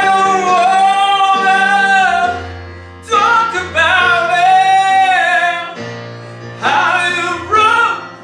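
A man singing into a microphone with piano accompaniment, holding long notes with vibrato in three phrases, with short breaths about two and a half seconds in and near six seconds.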